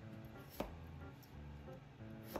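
A single knife chop through a peeled potato onto a cutting board about half a second in, over soft background music.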